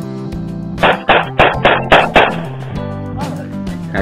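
Guitar background music under a rapid string of six pistol shots, about four a second, starting about a second in.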